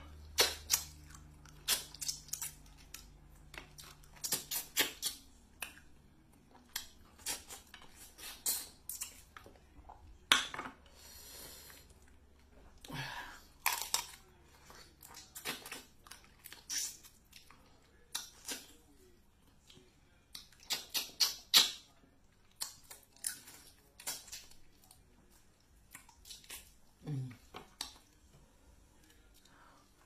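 Close-up eating sounds of a seafood boil: snow crab shells cracking and snapping as they are bitten and pulled apart, with chewing and sucking, in irregular clusters of sharp clicks. A faint low hum lies underneath.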